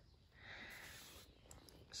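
Near silence: a faint soft hiss for under a second, and a couple of faint ticks.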